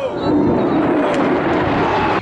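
Fighter jet passing low overhead: loud, steady jet engine noise, with crowd voices faintly under it.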